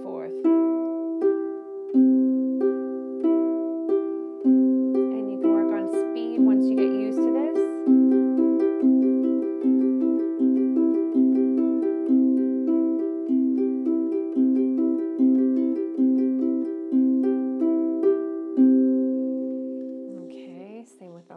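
Pedal harp playing a broken C major triad exercise, single plucked notes going C–G–E–G–C up and down. The notes come slowly, then quicker from about eight seconds in, and the last note rings out near the end.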